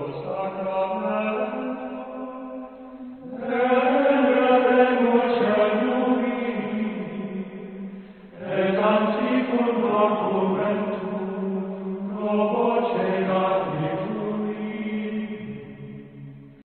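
Sung chant in long, held notes, with a new phrase beginning about every four seconds.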